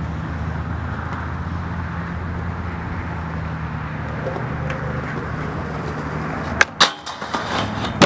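Skateboard wheels rolling on rough concrete, a steady rumble. Near the end come two sharp clacks close together, then a gap and another sharp clack, typical of the board's tail popping and the board landing.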